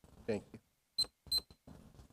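About a second in, two short high-pitched electronic beeps a third of a second apart, after a brief spoken word.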